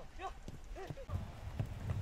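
Match sound from a football pitch: short shouted calls from players, followed by a low rumbling noise in the second half.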